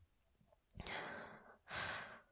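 A woman's soft, breathy sigh out through the mouth, followed a moment later by a short intake of breath. It is a quiet pause in a close-miked voice performance.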